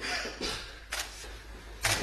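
Two short, sharp clicks from a prop sword being swung and snapped to a stop, one about a second in and one near the end, over faint room noise.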